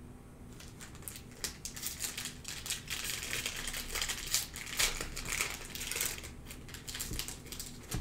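A foil trading-card pack wrapper crinkling as it is torn open and pulled off the cards. The crackling builds from about a second in and thins out near the end.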